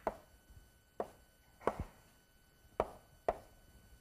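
Chalk knocking against a blackboard while an arrow is drawn: about five short, sharp taps at irregular intervals.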